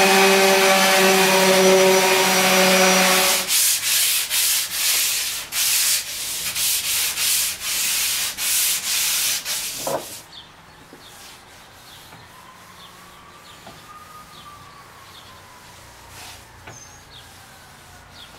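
Random orbital sander running on a wooden board, a steady motor hum over a sanding hiss, switched off about three and a half seconds in. It is followed by hand sanding along the grain, about two rough strokes a second, until about ten seconds in; after that only faint rubbing is left.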